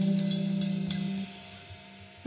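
A live band's final chord ringing out with a few cymbal and drum hits, then dying away a little over a second in.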